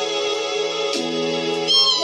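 Old-school hip-hop instrumental beat playing without vocals: sustained chords that change about a second in, marked by a single sharp hit. Near the end a high melody line glides up and down in pitch.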